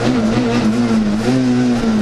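Rally car engine heard from inside the cabin, running hard with its pitch wavering and stepping up about halfway through as the driver brakes and downshifts from fourth to second for a tightening right-hander.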